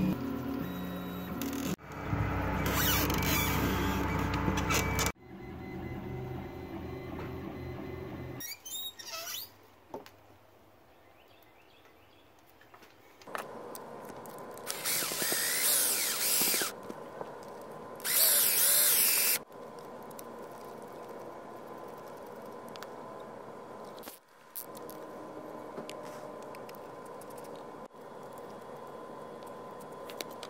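A string of workshop sounds: a 3D printer's stepper motors running for a few seconds, later two short bursts of a small power tool, then a steady hum.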